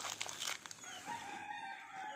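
Faint rooster crowing, one held call starting about a second in, with a few faint clicks in the first half second.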